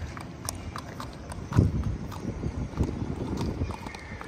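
Hoofbeats of a thoroughbred horse walking on packed dirt and gravel: an irregular run of light clops, the loudest about one and a half seconds in.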